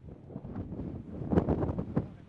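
Wind buffeting the microphone, a low rumbling that swells into louder gusts in the second half.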